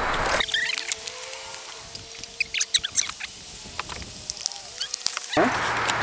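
Foam and paper packaging rustling and crinkling as it is pulled off a folding e-bike, with a run of small sharp crackles in the middle.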